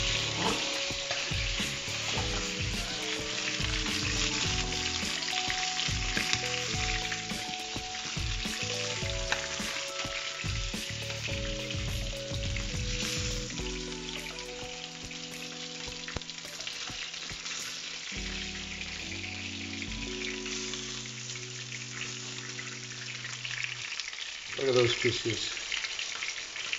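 Chicken pieces frying in oil in a hot pan, a steady sizzle. Underneath it, soft background music of slow held notes changes pitch every second or two.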